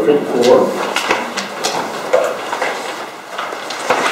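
Sheets of paper being leafed through and turned, a string of short rustles and light knocks, with a little murmured speech among them.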